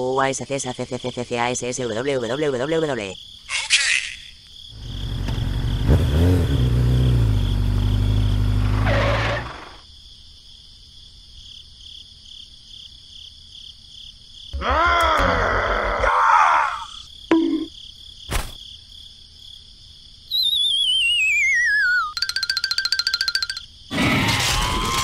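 A string of cartoon sound effects and squeaky, warbling character voices. At the start there is a wobbling voice, a few seconds in a low rumble, then a short call. Near the end comes a falling whistle followed by a rapid rattle.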